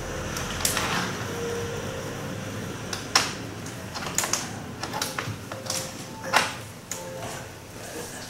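A few sharp taps and slaps of hands striking and brushing each other during sign language, irregularly spaced, the loudest two about three and six seconds in, over a steady room hum.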